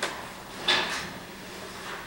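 Two short knocks or bumps, a sharp one at the start and a louder one about two-thirds of a second in.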